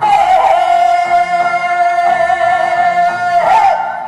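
A woman singing a Korean folk song (gugak) into a microphone over instrumental backing, holding one long steady high note for about three and a half seconds before breaking off near the end.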